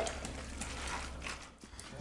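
Hands kneading seasoned cubed pork in a stainless steel pan, heard as faint irregular soft clicks that thin out after about a second and a half.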